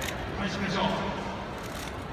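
A man speaking into a microphone, his voice carried over loudspeakers.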